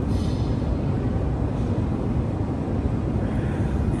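Steady low rumble of airport baggage-hall background noise, with a brief hiss near the start.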